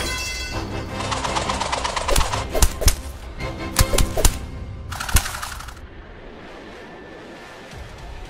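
Dramatic background music with a rapid string of sharp smack and impact sound effects, about seven hits between two and five seconds in, and a short burst of noise just after. The sound then settles back to quieter music.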